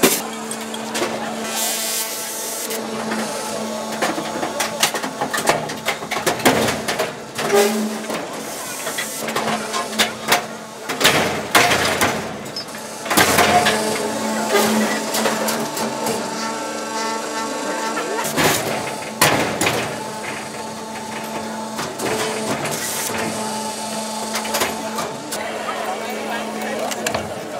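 Ron Arad's 'Sticks and Stones' crushing machine compacting steel wire chairs: a steady machine hum under a run of cracking, crunching and snapping metal. The loudest snaps come in clusters about a quarter of the way in, near the middle, and about two-thirds through.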